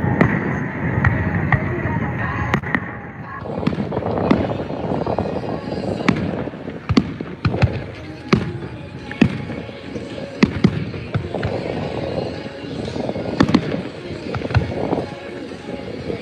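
Aerial fireworks display: shells bursting in a string of sharp bangs, roughly one to two a second, over a steady rushing background.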